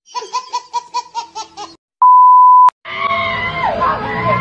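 A baby laughing in a quick run of about eight short giggles, followed by a loud steady beep tone lasting under a second. Near the end, a crowd's voices and shouts start.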